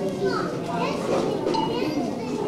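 Many children's voices chattering at once, a busy overlapping babble with no music playing.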